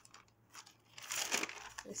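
Sheets of dyed, dried dictionary paper rustling and crinkling as they are picked up and shuffled by hand, starting about half a second in.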